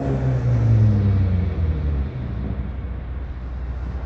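Car engine and road rumble heard from inside the cabin: a low engine note holds for the first couple of seconds, sinks slightly and fades out about two seconds in, leaving a steady low rumble.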